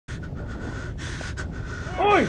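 Steady background hiss with a faint steady tone, the soundtrack ambience of a drama scene, briefly dipping twice.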